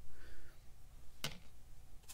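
A quiet room with one short, sharp click about a second in.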